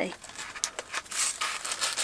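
A cardboard box and its foam packaging being opened and pulled apart by hand: irregular rustling and scraping with scattered small clicks.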